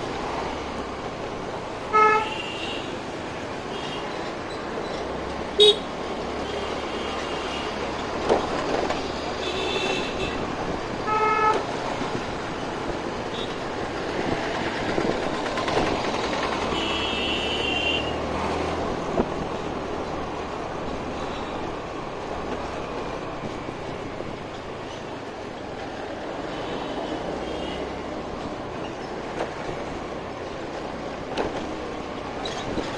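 Motor scooter being ridden along a street: continuous wind and road noise, with short horn beeps about two seconds in and again about eleven seconds in, and higher horns sounding around ten and seventeen seconds in.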